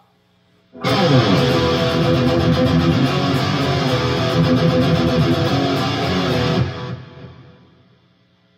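Electric guitar played loud through a PRS Archon amplifier's high-gain channel, heavily distorted. It starts about a second in, runs for nearly six seconds, then is cut and dies away; it is pretty loud by comparison with the amp's faint background hiss.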